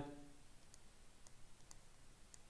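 Near silence broken by a handful of faint, light clicks: a stylus tapping on a writing tablet while handwriting is drawn on screen.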